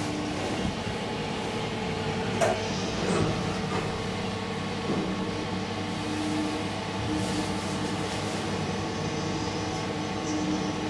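2012 SMW traction elevator car travelling in its shaft: a steady running hum with faint tones, and a few light knocks along the way.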